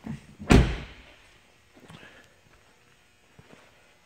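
The front passenger door of a 2012 Mercedes ML350 being shut: one solid thud about half a second in, then only faint small noises.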